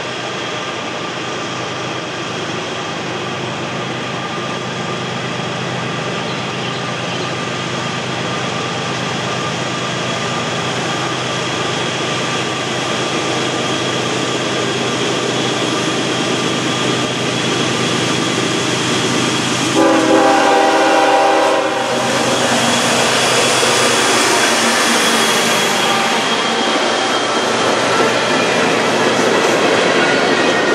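Diesel freight locomotives approaching and growing steadily louder, with one horn blast of about two seconds around twenty seconds in. Near the end, empty coal hoppers roll past with wheel clatter.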